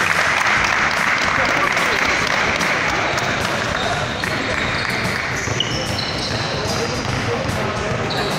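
Players clapping in a gymnasium, with voices. The clapping starts suddenly and slowly dies down over several seconds.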